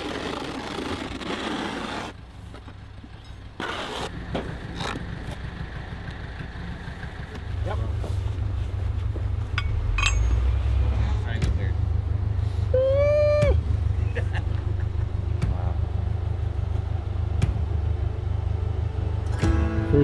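Background music: a low, steady drone comes in about a third of the way through and grows louder near halfway, with a short pitched call around the middle.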